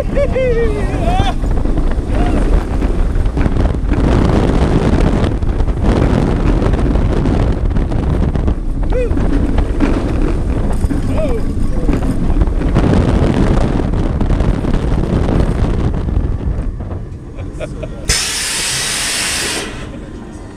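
Wind blast and track noise of a B&M dive coaster train running through its course, heard from a camera mounted on the train, with a few short rider yells early on and around the middle. The noise eases as the train slows, and a loud hiss lasts about a second and a half near the end.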